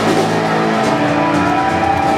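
Live noise-rock band playing loud: heavily distorted electric guitar and bass holding long, sustained notes over the full band.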